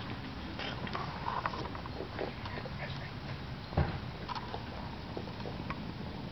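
Steady low background rumble with scattered short clicks and faint chirps, and one louder knock a little past halfway.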